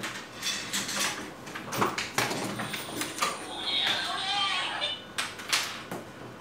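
Clicks, knocks and rattles of the plastic bottom case of an HP 245 G8 laptop being handled and lifted, in quick irregular strokes.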